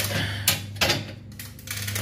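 Clatter of the blue plastic egg tray and metal turning rack of a homemade cabinet incubator as they are handled, with two sharp knocks about half a second and just under a second in, over a steady low hum.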